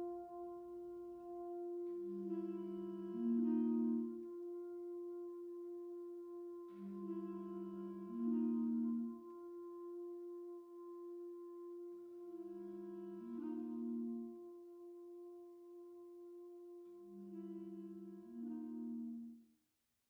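Student wind band of flutes, clarinets, saxophones and low brass playing a slow, quiet passage: a held chord with short phrases entering over it about every five seconds. The music cuts off suddenly near the end.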